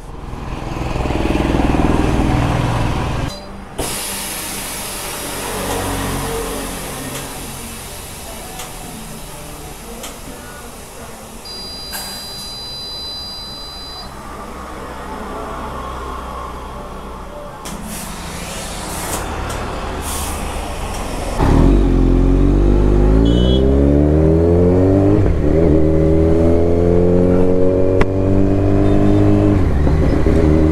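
Compressed air hissing from a tyre inflator hose at the motorcycle's wheel, with a steady electronic beep lasting a couple of seconds midway. About 21 seconds in, a Kawasaki Z900's inline-four engine comes in loud, rising in pitch as the bike accelerates away.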